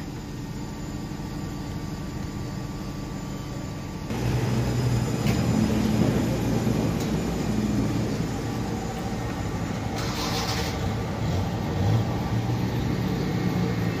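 Toyota Corolla Axio's inline four-cylinder petrol engine idling steadily, at first muffled as heard from inside the cabin, then louder from about four seconds in as heard from outside the car.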